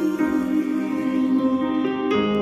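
Soft, slow Bollywood song music, here an instrumental stretch of sustained chords that change every second or so, remixed with a '10D' rotating stereo effect.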